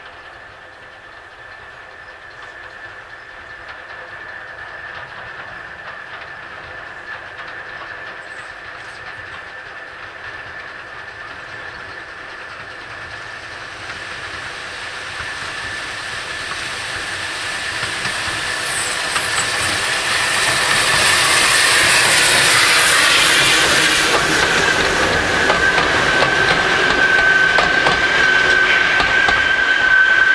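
Steam locomotive hauling a train past: the exhaust and the clatter of wheels over rail joints grow louder as it approaches, peak about two-thirds of the way through as it passes close by, and stay loud as it draws away. A steady high tone from the train drops a little in pitch as it goes by.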